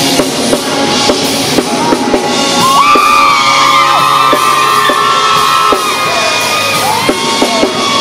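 Live band music: a male singer's vocals, with long held notes, over a steady drum-kit beat.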